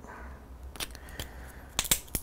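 A few small, sharp clicks and ticks of fly-tying tools being handled at the vise: single clicks in the first half, then a quick cluster of clicks near the end, over a low steady hum.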